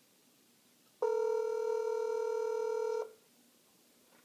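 Telephone ringback tone over a mobile phone's speakerphone: one steady ring lasting about two seconds, starting about a second in. The call is still ringing at the other end, unanswered.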